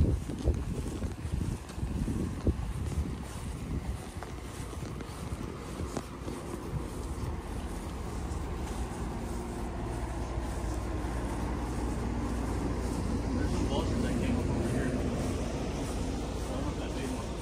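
Wind rumbling on the microphone, gusty in the first few seconds and then a steady low rumble.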